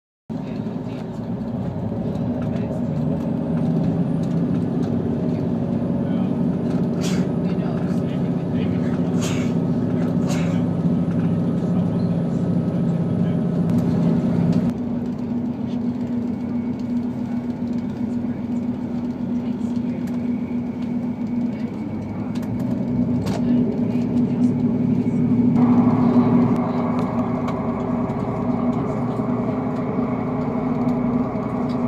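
Cabin sound of a diesel railcar under way: a steady running drone with a low engine hum and scattered sharp clicks. The sound shifts abruptly about halfway through and again near the end.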